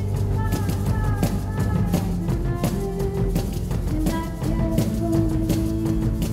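Live experimental pop performance: a woman singing in long held notes over a steady low keyboard tone, with a drum kit playing a regular beat of cymbal and drum hits.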